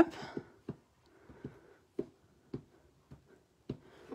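Black ink pad dabbed repeatedly onto a rubber stamp mounted on a clear acrylic block: about six soft taps, roughly half a second apart.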